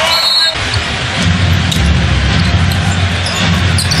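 Basketball game sound in an arena: a ball dribbled on the hardwood court over a steady crowd rumble, with a short high squeal at the very start.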